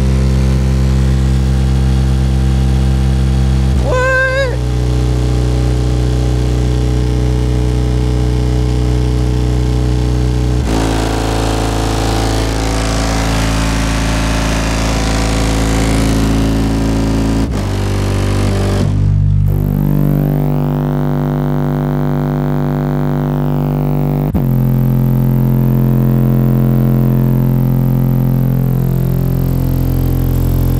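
A pair of 15-inch Kicker CVR subwoofers, driven by an Audiobahn amplifier, play a bass test track loudly: low tones are held for several seconds each, then step to a new pitch about a third of the way in and several more times later on.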